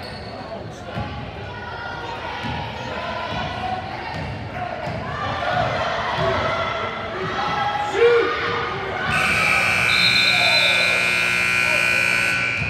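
Basketball being dribbled on a hardwood gym floor amid crowd chatter. About nine seconds in, a gym scoreboard buzzer starts a long, steady tone.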